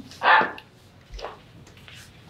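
A person's single short, sharp exclamation, "ah", just after the start, followed by quiet room tone with a faint brief sound about a second in.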